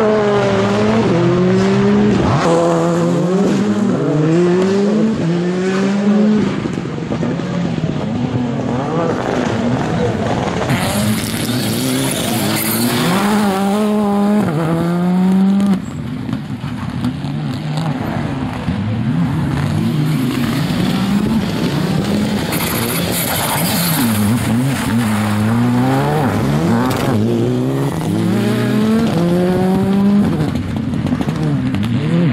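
Rally car engines, a Škoda rally car among them, revving hard through corners: the pitch climbs and drops in quick steps as the driver accelerates, shifts gear and lifts off, over and over. There is a brief dip in loudness about halfway through, then the revving resumes.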